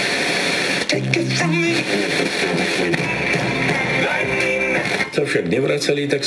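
An FM radio broadcast, a voice and music together, playing through the speakers of a Silva New Wave 7007 radio-cassette recorder that is cleanly tuned to a station.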